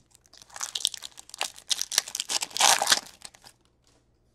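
A foil trading-card pack crinkling and tearing as it is ripped open by hand, in a run of crackles that grows loudest shortly before it stops.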